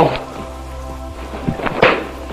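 A man performing quick kung fu crane-form moves: a few soft foot and body thumps, then a sharp, loud burst of noise near the end. All of it sits over the steady hiss and hum of an old 1960s film soundtrack.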